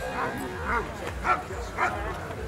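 German Shepherd barking repeatedly at the protection helper and his bite sleeve, short sharp barks about twice a second.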